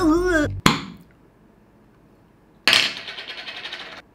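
Small jar of pizza sauce being opened and handled: a single sharp knock with a brief ring about half a second in, then near the end a sudden rasping scrape lasting about a second.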